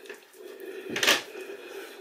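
Hands scrubbing a face with a gritty micro-polish exfoliating wash, a soft wet rubbing, with one brief louder rush of noise about a second in, over a steady low hum.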